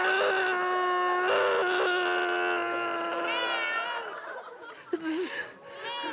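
A long, held scream of mock labor pain on one steady pitch, then a higher, wavering cry a little past the middle, and studio audience laughter near the end.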